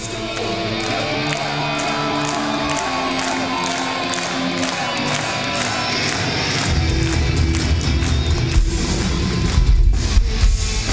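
Gothic metal band playing live: long, held guitar notes over a thin low end, then the heavy bass and drums come back in about seven seconds in.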